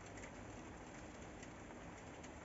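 Near silence: faint, steady room noise with no distinct sound.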